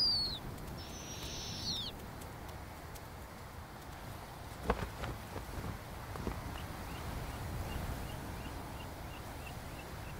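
High, hissy, descending calls from snowy owl owlets, one fading out at the start and a second lasting about a second, over a low outdoor hush. Later come a single sharp click and a faint run of small chirps, about three a second.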